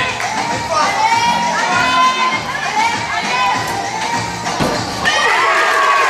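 Crowd cheering and shouting, with many high children's voices, while a gymnast dismounts from the still rings. A single thud of the landing on the mat comes about four and a half seconds in, and the cheering grows louder after it.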